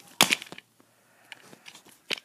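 Plastic lid of a clear food container being pulled open, with one sharp plastic clack about a quarter second in, followed by a few faint taps of plastic toy fruit.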